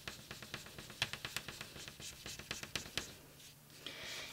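A small wooden burnishing tool rubbed hard back and forth over the Citrasolv-wetted back of a laser print laid on cotton drop cloth, pressing the toner image onto the fabric. A fast run of faint scratchy strokes that dies away about three seconds in.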